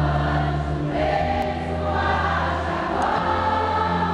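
A choir singing a Catholic worship song with amplified accompaniment, long held notes over a steady low backing.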